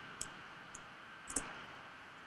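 Computer mouse clicking faintly three times, about half a second apart, over a low steady hiss, as the presentation slide is advanced.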